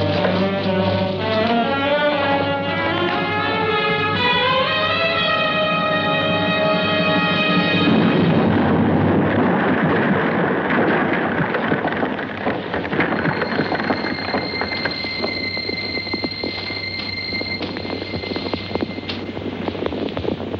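Film-score music with a rising melody for the first eight seconds or so. Then a dense crackle of rapid pops and bangs from battle pyrotechnics, smoke charges going off, takes over, with a high steady tone held over it in the second half.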